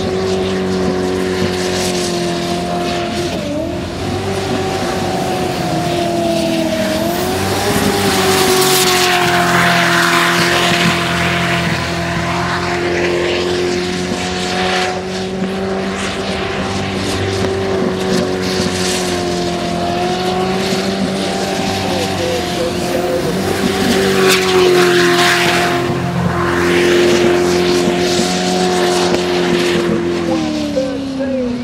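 Jet sprint boat engine running hard at high revs, its pitch holding nearly steady apart from brief dips and recoveries in the first few seconds. Over it runs a rushing hiss of water spray that swells twice, in the first half and near the end.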